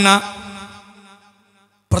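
A man's lecturing voice ends a drawn-out, sing-song phrase at the start, and the sound lingers and fades away over about a second. After a short silence he begins the next phrase at the very end.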